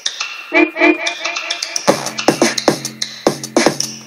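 Electronic music played live by triggering soundpack samples from a Launchpad grid controller: a steady beat of sharp drum hits and synth notes. The bass drops out for the first two seconds and comes back in about halfway through.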